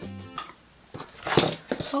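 Background music cutting off about half a second in, then a few sharp knocks and rustles of a fabric-covered cardboard box and lid being handled on a worktable.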